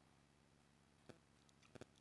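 Near silence: quiet room tone with a few faint short clicks, one about a second in and two close together near the end.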